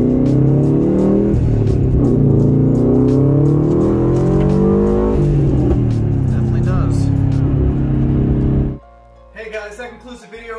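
2015 Subaru WRX STI's turbocharged flat-four engine accelerating hard, heard from inside the cabin. The engine's pitch climbs, drops sharply at an upshift about a second in, climbs again to a second upshift about five seconds in, then holds steadier. It cuts off suddenly near the end.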